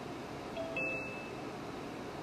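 Steady low background hiss. A brief faint beep-like tone comes a little after half a second in and lasts about half a second.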